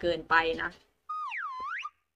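A cartoon-style sound effect edited in: a short pitched tone, under a second long, that dips and then swoops back up in pitch, starting about a second in.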